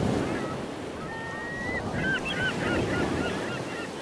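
Birds calling with short rising-and-falling notes over a steady wash of waves and wind at the shore, the calls thickest from about halfway through.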